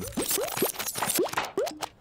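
Cartoon sound effects: a run of about half a dozen quick rising bloops or pops as the characters' scattered pieces pop back together.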